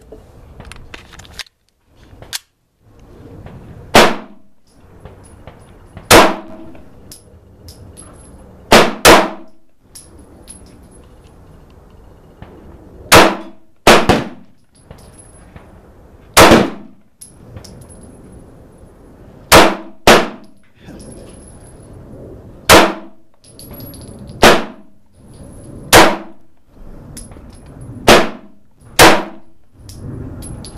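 Caracal Enhanced F semi-automatic pistol firing about fourteen single shots, mostly one every one to three seconds with a few quick pairs, each report followed by a short ringing decay. The pistol cycles through every shot without a stoppage.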